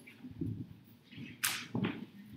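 A few short swishing and rustling sounds close to a lectern microphone. The sharpest comes about one and a half seconds in, with another just after.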